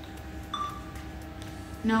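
A single short electronic beep about half a second in, over a faint steady hum; a voice starts near the end.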